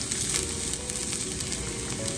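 Minced garlic and diced bacon sizzling gently in the bacon fat of a cast iron skillet on low heat: a steady hiss with fine crackles.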